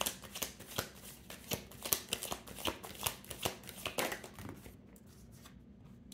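A tarot deck being shuffled by hand: a quick, irregular run of papery flicks and taps that eases off about four and a half seconds in.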